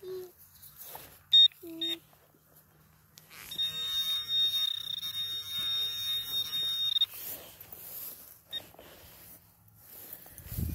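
Garrett handheld pinpointer alerting on a metal target in a dig hole: two short high beeps, then a steady high tone lasting about three and a half seconds.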